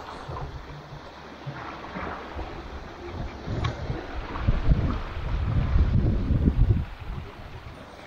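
Wind buffeting the microphone over water washing along the hull of a small sailboat under way in light wind. The gusts grow louder about halfway through and ease off near the end.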